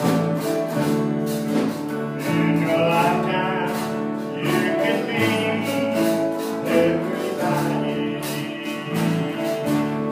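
A man singing a gospel song, accompanied by acoustic guitar, with long held notes.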